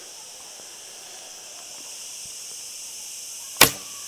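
A single sharp snap from a laminated Mongolian Yuan-style horse bow, the AF Archery Jebe Gen 2 of about 50 lb, as it is shot from a draw of almost 33 inches, coming after about three and a half seconds of quiet.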